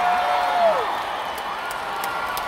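A single voice holding one long steady note that slides down and trails off just under a second in, then quieter noise from the audience in the hall.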